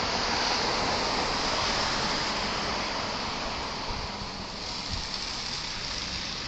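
Steady road traffic noise from cars passing on a street, a hiss of tyres and engines with no single event standing out.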